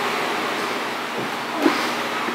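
Steady hissing background room noise, with a short soft sound near the end.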